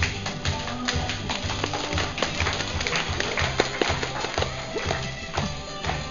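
Loud rock music: a bass line under a fast beat of sharp drum strikes.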